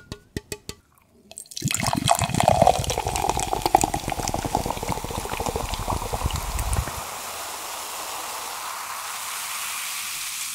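A few light taps on a can of Coca-Cola, then from about a second and a half in a loud rush of carbonated fizzing from the can held close to the microphone. The fizzing is heaviest for about five seconds, then settles to a steady hiss.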